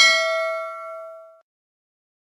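Notification-bell chime sound effect: a single bell-like ding with several ringing overtones, fading out about a second and a half in, as the animated bell icon is clicked.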